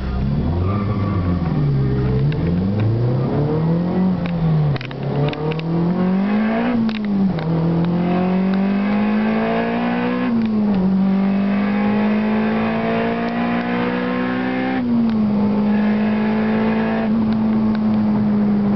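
Turbocharged Honda K20 four-cylinder of an Acura RSX Type S heard from inside the cabin on a drag-strip run, driven without a hard launch: the engine note rises and falls several times over the first few seconds, then climbs steadily through the gears, its pitch dropping at each upshift at about 7, 10 and 15 seconds in.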